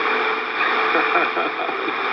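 BBC World Service shortwave AM broadcast on 12095 kHz received on an Icom IC-R8500: a steady hiss of static with a voice faintly audible through it.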